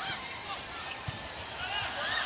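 Volleyball arena crowd noise with a volleyball struck once about a second in, and a few short squeaks of shoes on the court near the start and near the end.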